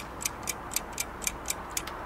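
Clock-ticking sound effect, about four crisp ticks a second, counting off the pause given for translating.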